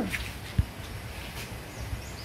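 A child's movements against a wire-mesh cage: faint rustling and one soft, low thump about half a second in.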